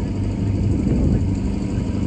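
Steady low hum of an idling engine, with no distinct events.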